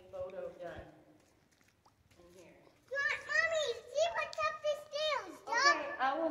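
A young girl's high-pitched voice making wordless, sing-song calls and squeals that rise and fall in pitch. They start about three seconds in, after a short quiet stretch.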